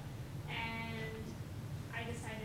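A woman's voice holding one long, level-pitched vowel for about half a second, over a steady low hum.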